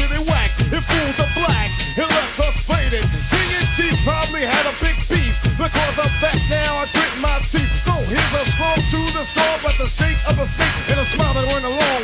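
Late-1980s hip-hop track in a DJ mix: a rapped vocal over a drum beat with deep, repeated bass notes.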